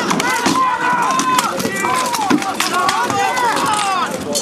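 Rapid, irregular sharp cracks of rattan weapons striking wooden shields and helmets in a close melee, over men shouting.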